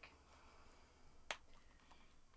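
Near silence broken by a single sharp click a little past halfway, as the plastic wrap on a journal is torn open.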